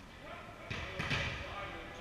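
A volleyball striking in a large gymnasium: two sharp hits about a third of a second apart, each echoing off the hall.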